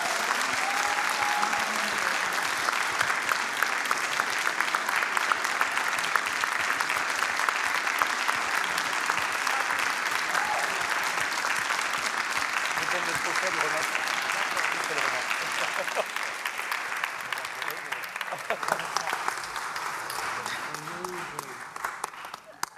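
A crowd applauding, a dense steady clapping that thins out over the last few seconds, with a few voices calling out over it.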